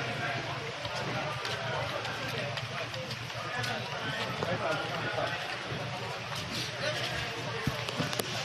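Several people talking at once, no words clear, with footsteps of a group walking on concrete.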